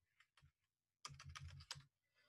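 Faint computer keyboard typing: a couple of single keystrokes, then a quick run of about eight keys about a second in.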